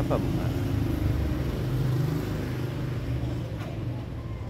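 A steady low rumble that eases slightly near the end.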